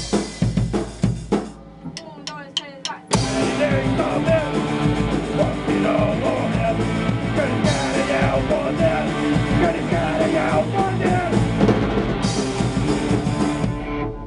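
Punk rock band rehearsing: about two seconds in, drumsticks click four times as a count-in, and the full band then comes in together at full volume. The band is drum kit, distorted electric guitars and bass, with a singer on the last verse.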